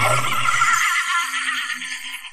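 A woman's long, high, shrill cackling laugh, held on one drawn-out note that trails off near the end.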